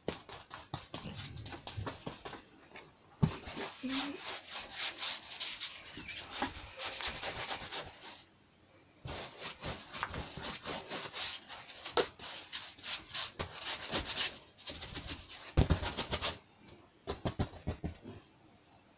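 Paintbrush scrubbing wet paint across a canvas in quick rasping strokes, in long runs that stop briefly about eight seconds in and again near the end.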